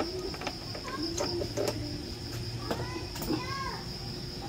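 Steady high-pitched drone of night insects such as crickets, with a few light clicks in the first two seconds and short chirping calls near the end.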